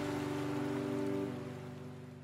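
Quiet sustained background-music chord fading away gradually, over a soft steady hiss.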